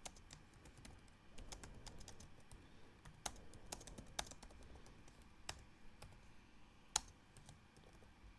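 Faint typing on a computer keyboard: irregular key clicks as a line of code is entered, with one louder keystroke about seven seconds in.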